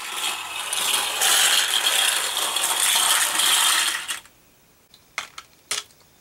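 Nine Micro Drifters ball-bearing toy cars clatter and rattle together down a plastic gravity track for about four seconds before stopping. A few sharp clicks follow near the end.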